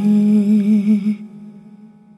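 The close of a Tamil song: a voice humming one long held note with gently wavering pitch over sustained accompaniment, fading out about a second in.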